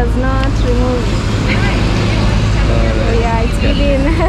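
Steady low rumble of road traffic, with a city bus's engine among it, under short snatches of nearby talk.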